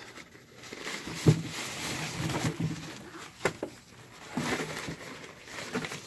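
Plastic and nylon fabric bags rustling and crinkling as they are handled and pulled out, with a sharp knock about a second in.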